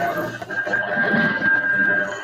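Jumbled, indistinct audio coming through an open microphone on a video-conference call, with a steady high-pitched whine running through it.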